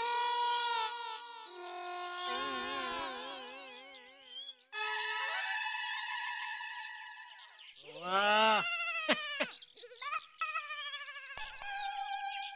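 Comic background music made of held electronic tones, some with a wide wobbling vibrato, then a run of swooping pitch glides about eight seconds in.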